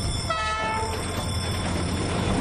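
A diesel locomotive's horn sounds a short blast of several tones together for about half a second near the start. It gives way to the steady rumbling noise of the train rolling past.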